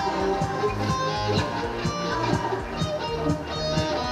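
Electric guitar played live over a pop-song backing track with a steady drum beat.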